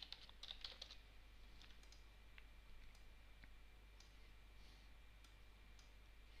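Computer keyboard typing: a quick run of keystrokes in the first second, then a few scattered faint clicks over a steady low hum.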